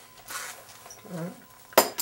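Leather gun belt being set down on a tabletop, its metal buckle clinking sharply once against the table near the end, after faint handling rustle.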